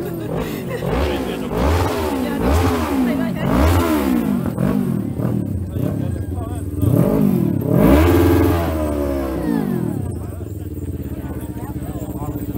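Motorcycle engine revved up and down repeatedly in quick blips, then settling to a steady idle about nine seconds in.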